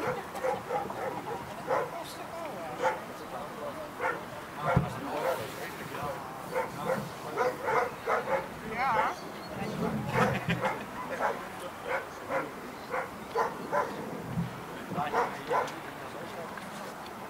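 A German Shepherd whining and yipping in many short, high-pitched cries, one of them wavering, while working at heel.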